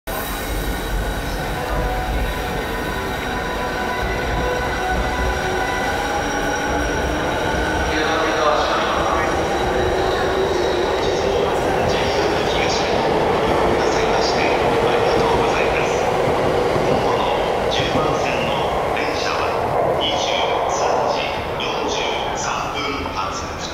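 An E217-series electric commuter train pulling out of the platform. Steady motor tones give way to a rising electric whine as it accelerates, over wheel and rail noise. The sound drops away just before the end as the train clears the platform.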